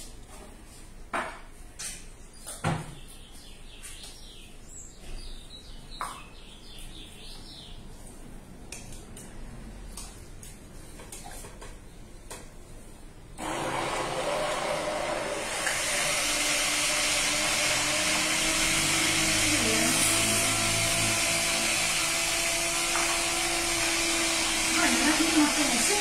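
A hand-held immersion blender is switched on about halfway through and runs steadily with a humming motor whine, puréeing soaked cashews and water in a tall beaker. Before it starts there are a few light knocks and clicks.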